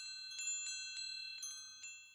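Wind-chime sound effect: a run of light strikes over several high ringing tones, dying away near the end.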